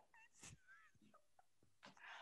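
Near silence, with two faint, short, high gliding squeaks in the first second and a few soft clicks.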